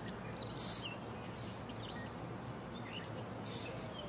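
Outdoor background hiss with faint, scattered bird chirps. Two short, raspy, high-pitched sounds stand out, about half a second in and again near the end.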